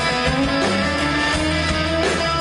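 Live band playing an instrumental passage, electric guitars to the fore over a steady bass line.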